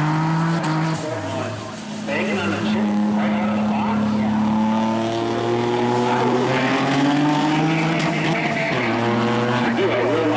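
Racing car engines running hard at full throttle. The engine note drops and dips in level about a second in, holds steady, then climbs again as the cars accelerate down the track.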